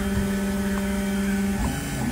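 Large-format DIY 3D printer running mid-print, its recycled Nema23 stepper motors moving the print head with a steady hum. The hum briefly changes about three-quarters of the way through.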